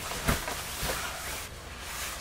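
Rustling of a nylon puffer jacket and scuffling as one person hoists and carries another, with a sharp thump about a quarter second in and a softer one near the middle.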